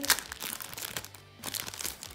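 Foil wrapper of a Panini Adrenalyn XL trading-card booster pack crinkling and crackling as it is opened and the cards are pulled out. The crackles are densest in the first second.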